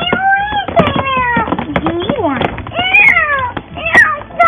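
A girl's put-on crying in a high voice: a string of long, falling wails, acting out a doll's tantrum at being put in time out. Short plastic knocks from handling the doll and its bouncer seat come between the wails.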